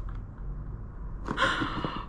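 A woman's excited breathy gasp about a second in, after a brief quiet stretch with only a low room hum.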